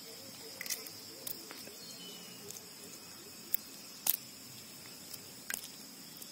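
Boiled eggshell being peeled by hand, giving a handful of sharp little cracks and clicks, the loudest about four seconds in, over a steady high insect buzz.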